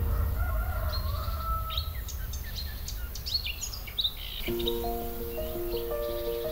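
Small birds chirping, many short high calls through the first four seconds over a low steady rumble. Gentle instrumental music with held notes comes back in about four and a half seconds in.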